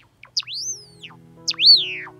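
Two loud, clear chirps from a Java sparrow, each sweeping up and then down in pitch, about a second apart; the second is the louder. Background music runs underneath.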